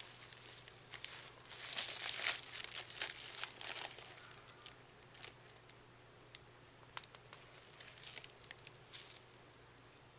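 Tissue paper crinkling and rustling as a cat paws and noses at it: a dense stretch of rustling in the first few seconds, then scattered short crackles.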